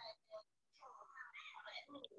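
A faint, low voice speaking briefly, with dead-quiet gaps around it.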